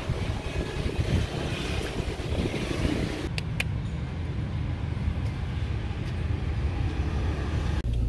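Street traffic: motor scooters and cars passing, a steady low rumble with no clear single event, with a couple of faint clicks about three and a half seconds in.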